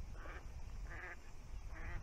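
Three short animal calls, each a brief mid-pitched note, spaced a little under a second apart.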